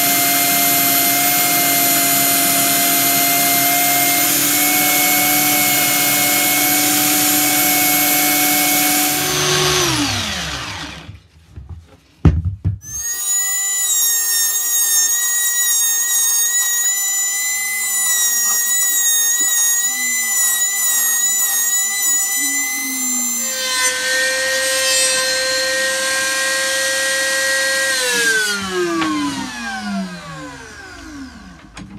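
An electric sander runs steadily, then winds down about nine seconds in. After a click, a small electric wood router starts and runs with a steady whine, shifts pitch about two thirds of the way through, and winds down at the end.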